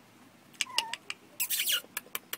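Four-week-old Jack Russell Terrier puppies giving short high squeaks and a brief whine with falling pitch, among several sharp clicks.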